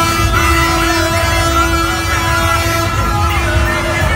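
A vehicle horn held in one steady blast for about three seconds, with a short break just after it begins. Music from the procession and the low rumble of tractor engines run underneath.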